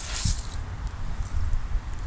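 Dirt and small debris rattling softly as they are shaken through a plastic tub sifter with holes drilled in its bottom, over a steady low rumble.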